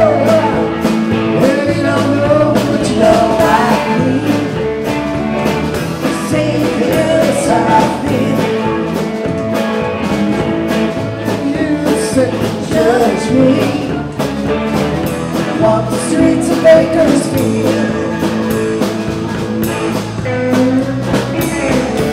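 Live rock band playing: electric guitars, keyboard and drum kit, with a singer, recorded from the room with levels set too hot so the sound is loud and distorted.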